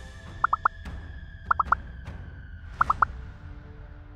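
Background music with a cartoon-like 'pop' sound effect, three quick rising blips, played three times about a second apart: the cue for each quiz answer option popping onto the screen.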